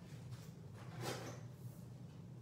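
Faint brief rustle of craft supplies being handled, about a second in, over a steady low hum.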